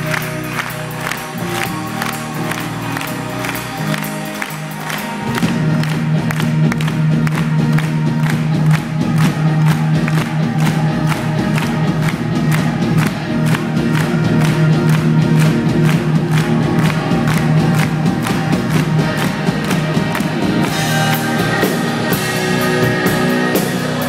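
Live symphonic metal band playing through a concert hall PA, recorded from within the audience: a steady beat over held low notes, growing fuller and louder about five seconds in, with crowd noise underneath.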